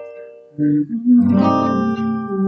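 Steel-string acoustic guitar with a capo, playing chords: a chord rings and fades, then fresh chords are struck about half a second in and again about a second in, and ring on.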